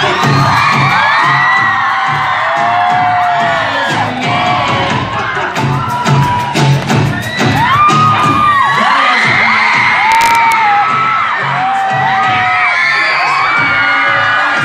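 Live band music with a steady beat, covered by a crowd of children and fans screaming and cheering, with many short high-pitched shrieks.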